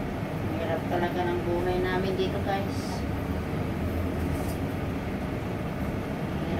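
Steady low rumble of a kitchen with a gas burner lit under a pot, with faint, indistinct speech over it during the first half.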